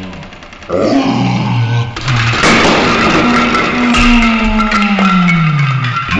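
Group of men shouting as a shaking Jenga tower collapses, the sound drawn out in a slowed-down replay: from about two seconds in, one long deep voice slides steadily down in pitch.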